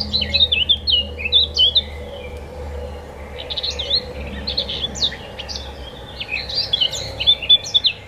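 A songbird singing in phrases of rapid, varied chirping notes, each phrase about two seconds long with short pauses between, over a faint low hum.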